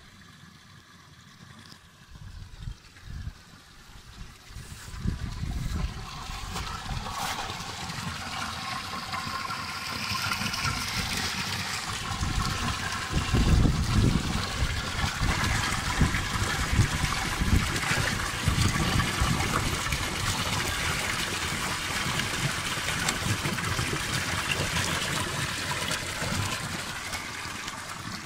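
Water pouring from the spouts of a stone roadside fountain into its long trough: a steady splashing trickle that swells over the first several seconds and then holds. Irregular low thuds run underneath, loudest about halfway through.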